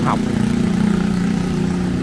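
Motorbike engines running steadily as motorbikes ride past on the street, a continuous low drone.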